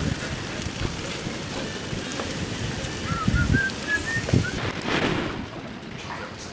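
Busy street ambience: a steady hiss with scattered low thumps, and a run of about six short chirps stepping up in pitch between about three and four seconds in.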